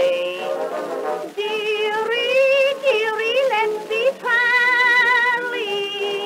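Small studio orchestra playing an instrumental passage of the tune on a 1917 acoustic-era Edison disc recording, a wavering melody line over accompaniment with no bass at all.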